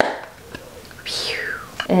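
A brief breathy whoosh about a second in, falling in pitch from high to mid over under a second, between stretches of talk.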